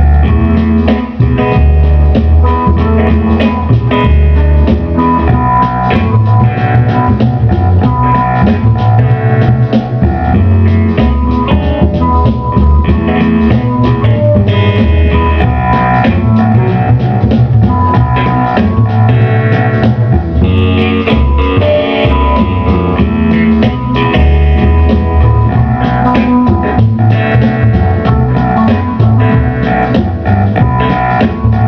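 Instrumental blues: a Yamaha keyboard on a clavichord voice, an Epiphone Les Paul electric guitar and a double bass playing together over a steady beat.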